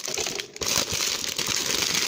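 Clear plastic wrapper of a trading-card multi-pack crinkling as it is handled and pulled open. A dense, continuous crackle sets in about half a second in.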